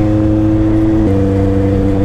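Kawasaki Z800 motorcycle's inline-four engine running steadily under way. Its pitch creeps up slightly, then drops suddenly about a second in.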